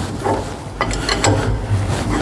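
Spanner turning the fine-threaded bowl of a high-pressure hydraulic filter housing loose, giving a few irregular metallic clicks and knocks over a low steady hum.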